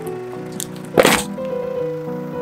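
A shrink-wrapped four-pack of aluminium soda cans crushed under a car tyre: one loud, sharp crack about halfway through, over background music.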